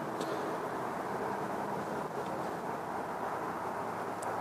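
Steady outdoor background noise: an even hiss and rumble with a faint low hum, unchanging throughout, with no distinct events.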